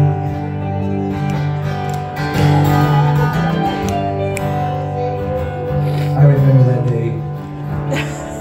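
Live acoustic guitars playing an instrumental passage together, with low notes held steadily underneath.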